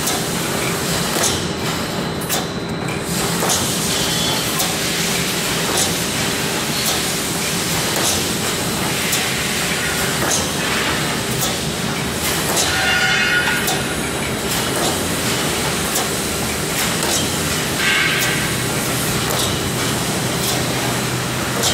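Automatic welded wire mesh panel machine running: a steady hum with irregular sharp clicks and snaps as it welds the cross wires and advances the mesh.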